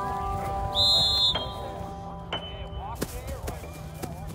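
Background music with held notes. About a second in, a short high whistle blast, like a coach's whistle at football practice, and a few sharp knocks later on.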